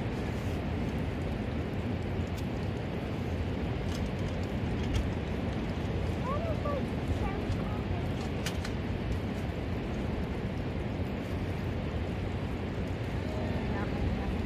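A few light metal clicks and clinks as the stainless steel panels of a cheap folding fire box are slotted together, over a steady rush of wind and surf.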